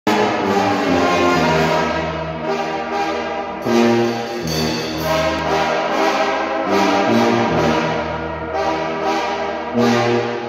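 Brass band playing: sousaphone carrying a low bass line under trombones and other horns, in held notes that change about once a second.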